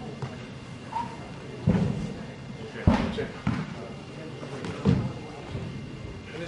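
Heavy footfalls on an indoor shot put circle as a thrower steps and turns through a throwing drill: four heavy thuds spread over about three seconds.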